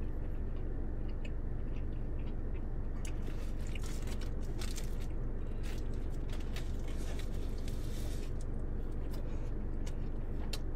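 Close-up chewing of a triple pretzel-bun burger, wet mouth sounds with scattered short clicks, over a steady low hum.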